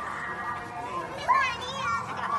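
Young children's high-pitched voices calling and chattering, one louder rising cry about a second and a half in, with music playing in the background.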